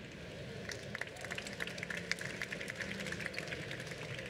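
Light audience applause: a patter of many hand claps that starts about half a second in and thins out near the end.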